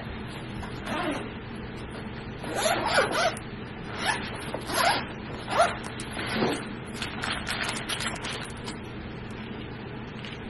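Zipper on a fabric tech bag being pulled open in several short strokes, then a quick run of small clicks and rustles as the bag's contents are handled.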